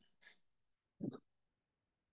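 Near silence broken by a short breath, then a brief murmured vocal sound about a second in.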